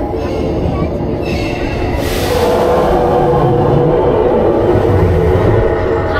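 Steel roller coaster train running slowly along its track, a steady rumble of wheels on rail that grows a little louder about two seconds in.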